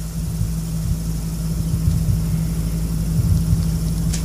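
A steady low hum with a faint rumble underneath, unchanging throughout.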